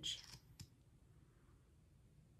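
Near silence with room tone, broken about half a second in by a single faint click; the tail of a spoken word fades out at the very start.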